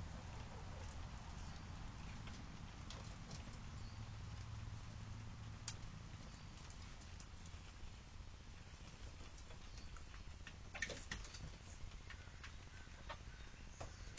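Faint, scattered taps and clicks of hens pecking and scratching in straw and around the feeders, with a short cluster of taps about eleven seconds in, over a low steady hum.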